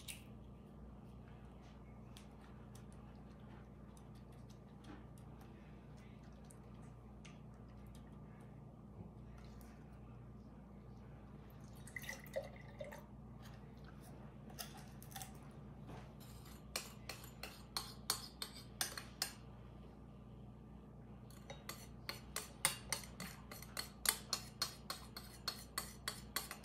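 Faint low room hum, then light clicks and clinks of small glass and crockery being handled, which near the end turn into quick regular tapping, about three or four clinks a second, against a glass jar or dish.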